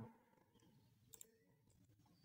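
Near silence: faint room tone with a single soft computer mouse click about a second in.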